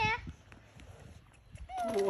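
Shouted encouragement that cuts off just after the start, about a second of faint low outdoor noise, then a loud cheering "wahey!" that glides down in pitch near the end.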